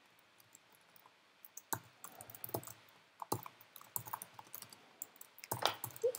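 Computer keyboard typing: faint, irregular key clicks that begin about a second and a half in.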